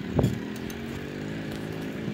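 Riding noise of a bicycle on a paved street, picked up by a phone mounted on the bike: a single sharp knock shortly after the start, then steady rolling noise with a faint low hum.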